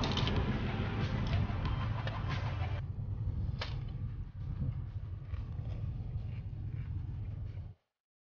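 A person eating a taco in a car: scattered clicks and crackles of chewing and of the paper wrapper being handled, over a steady low cabin rumble. The sound cuts off suddenly near the end.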